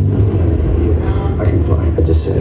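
Film soundtrack played through room speakers and picked up from the audience: muffled dialogue over a steady deep vehicle rumble.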